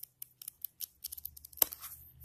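Sheets of a small paper notepad flicked by a thumb: a quick run of crisp paper clicks and flutters, with one sharper click about one and a half seconds in.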